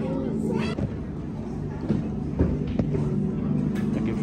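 Indistinct voices over steady background music, with a couple of faint knocks about halfway through.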